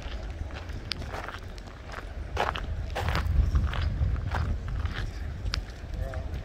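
Footsteps on stone paving, one step about every half second, over a steady low rumble.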